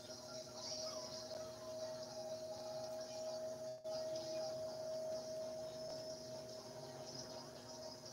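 Steady high chirring of night insects over a steady low hum, with a brief dropout in the sound about four seconds in.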